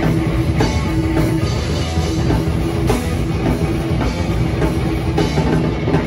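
A heavy metal band playing live and loud: electric guitars over a pounding drum kit, with no vocals.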